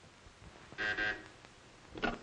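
Desk telephone ringing in two short, close bursts, the signal of an incoming call that is answered moments later.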